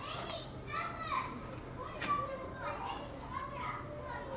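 Several young children talking and calling out at once, their high voices overlapping.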